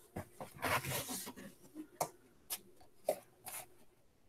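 Handling noise of a sheet of material and small kit pieces moved about in the hands: rustling for about the first second and a half, then three or four separate sharp clicks.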